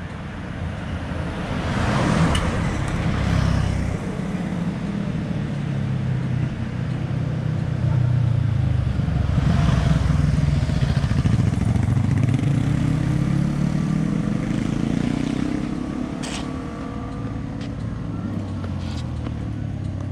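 Motorcycle engine running, its pitch rising and falling, loudest about two seconds in and again around the middle.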